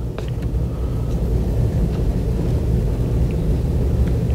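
A steady low rumble with a few faint clicks and no speech.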